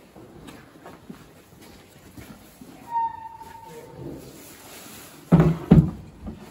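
Workshop background with a short steady beep about halfway through, then near the end a large plastic sheet being pulled over composition moulds: two loud, deep rustling thumps close together.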